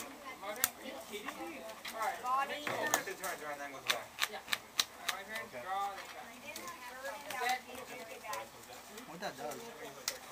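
Indistinct voices talking, with scattered sharp clicks and taps from trading cards being handled on the table.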